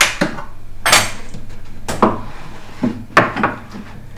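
Wooden slide-out tray being drawn out of a machine toolbox cabinet, with a few knocks and metallic clinks, about one a second, from the steel spanners it holds.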